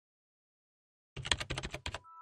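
A quick run of typing clicks, about a dozen keystrokes in under a second, starting a little past halfway: a typing sound effect for on-screen text appearing.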